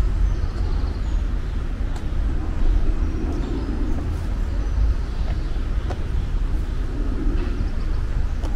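Outdoor city ambience: a steady low rumble of distant road traffic, with a few faint high chirps over it.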